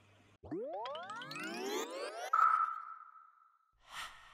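Audio logo sting: a cluster of tones sweeps upward for about two seconds and settles into one ringing tone that fades out. A fresh hit starts right at the end.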